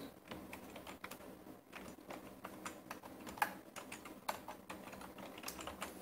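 Typing on a computer keyboard: a run of quick, irregular keystrokes.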